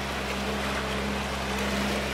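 A small motorboat's engine running steadily, a low even hum under a steady hiss.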